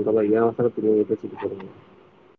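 A pigeon cooing: a run of low, wavering coos, heard through a phone's microphone in a live audio chat. The coos fade toward the end.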